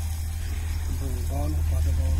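A steady low rumble throughout, with a person's voice speaking briefly about a second in.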